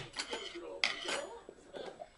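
Plastic food containers and a jar being handled and shifted on a tabletop: a series of light knocks and clicks, the sharpest a little under a second in.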